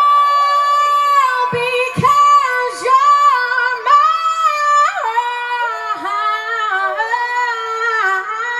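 A woman singing unaccompanied into a microphone, with long held notes that slide and break into short runs between them.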